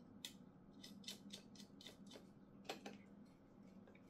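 Faint, irregular light clicks of a small screwdriver turning a small screw that holds a sensor circuit board to its mounting pillar, with two sharper ticks, one just after the start and one about two-thirds of the way in. A steady low hum sits underneath.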